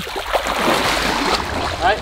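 Churning water and bubbles heard through a submerged action camera, a steady rushing hiss; a man's voice comes in near the end.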